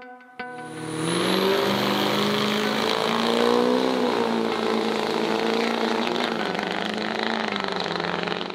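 Diesel pickup truck accelerating hard down a drag strip. The engine sound swells about a second in, climbs in pitch, then holds and fades near the end.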